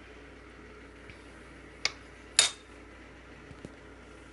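A metal spoon knocking against a ceramic crock pot: two sharp clinks about half a second apart in the middle, the second louder with a short ring, then a couple of faint taps near the end.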